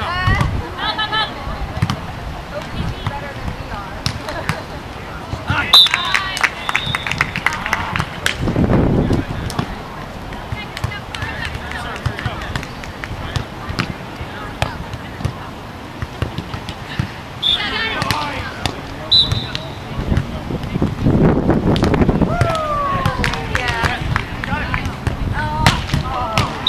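Volleyball players on a sand court shouting and calling to one another, with sharp slaps of the ball being hit during play. One long falling shout comes near the end.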